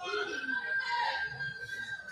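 A single high-pitched cry held steady for about two seconds, like a spectator's drawn-out yell, over faint hall noise.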